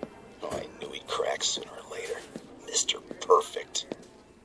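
Indistinct whispering voices in short, breathy phrases, one after another.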